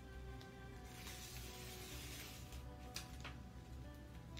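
Soft background music. Over it, the paper backing is peeled off a sheet of contact paper with a rustle lasting about a second and a half from about a second in, followed by two light ticks near the end.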